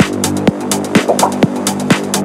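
Minimal techno: a steady electronic kick drum about twice a second under a sustained synth bass and pads.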